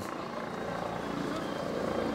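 A steady distant engine drone, getting slightly louder towards the end.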